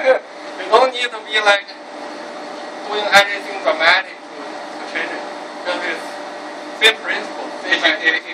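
Men laughing, followed by short bursts of voice, over a steady background hum.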